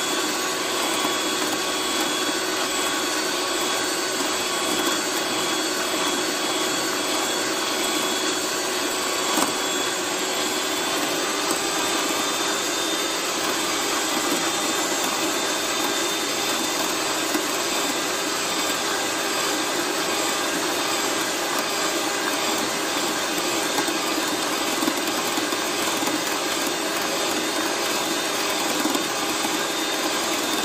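Electric hand mixer running steadily at one constant pitch, its wire beaters whipping instant coffee, sugar and water in a glass bowl into a thick foam.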